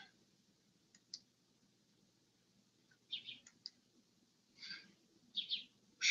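Near silence, broken by a few faint, short, high-pitched clicks spread through the few seconds.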